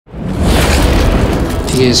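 Loud thunder, a deep boom that swells up from silence within half a second and rumbles on steadily.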